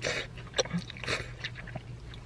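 Someone taking a forkful of collard greens and chewing: short, soft mouth and food noises, with a sharp click of the fork about half a second in. A low steady hum runs underneath.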